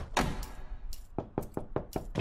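A quick series of sharp clicks and knocks: a metal chain-link gate latch clanking, then knuckles rapping on a door, with several evenly spaced knocks in the second half.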